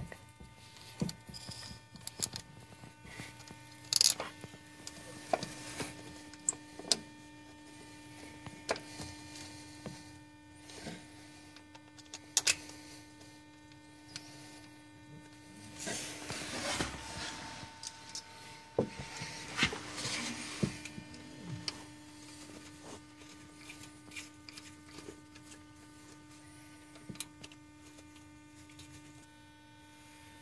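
Faint clicks, taps and rubbing of hands working a VGT turbo actuator onto a turbocharger, wiggling it to align its gear teeth and handling its wiring plug, over a steady low hum.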